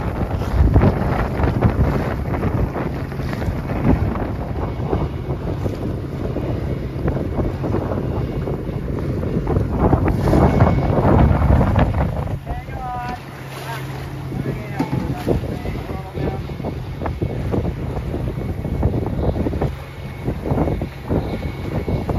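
Wind buffeting the microphone in gusts over the rush and splash of choppy water along a small sailboat's hull as it sails. About halfway through the wind eases slightly, and a brief run of high chirps is heard.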